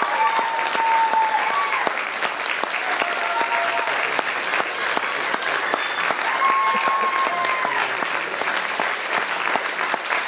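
Audience applauding steadily, with a few drawn-out cheers, about one early on and another around two-thirds of the way through.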